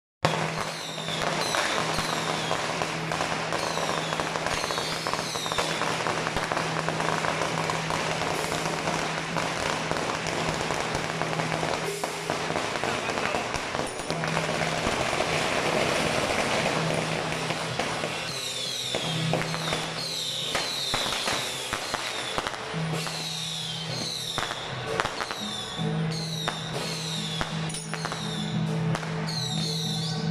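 Firecrackers crackling continuously over procession music. A steady low tone comes and goes, and in the second half short falling squeals repeat every second or so.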